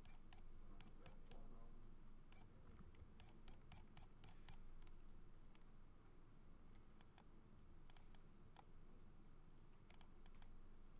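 Faint, irregular clicking of computer keyboard keys and mouse buttons, a few scattered clicks a second, over a low steady hum.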